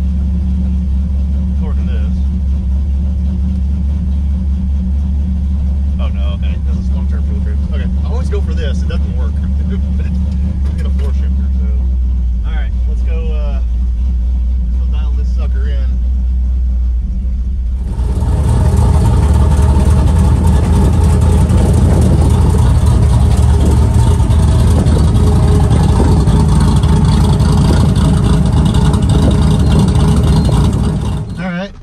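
Cammed 5.3 LS V8 (BTR Stage 4 truck cam) idling, heard from inside the cab as a steady low hum. About 18 s in, a much louder, fuller engine and road sound takes over abruptly.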